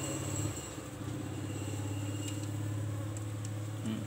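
A steady low hum that dips briefly about half a second in, with a few faint ticks.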